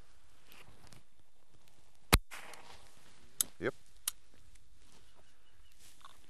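One shotgun shot about two seconds in, sharp and loud with a short ring-out, followed by two fainter sharp cracks a second or two later.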